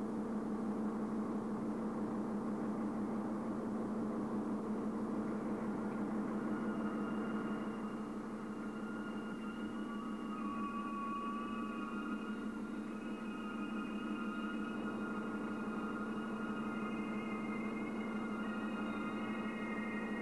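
Car ferry's engine running with a steady low hum. About six seconds in, slow electronic music with long held notes comes in over it.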